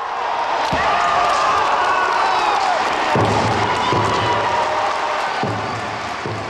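Spectators in a large hall cheering and applauding as the final men strike is awarded, with a single thud about a second in.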